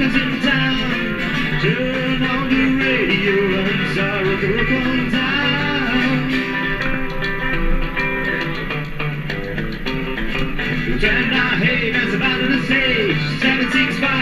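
Live rockabilly trio playing an instrumental passage without vocals: an electric lead guitar with bending notes over acoustic rhythm guitar and double bass.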